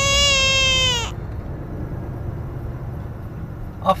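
Lorry cab noise, with the engine and tyres rumbling low and steady. It opens with a single loud held tone of about a second that falls slightly in pitch.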